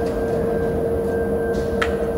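Steady machine hum with one constant mid-pitched tone, and a single short click near the end.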